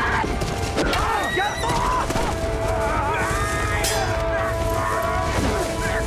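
Dramatic film score with long held notes, under shouts and cries from a struggle, with a few sharp hits, the clearest about a second in and near four seconds.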